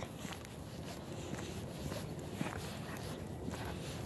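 Faint footsteps of a person walking, over a low, steady background hiss.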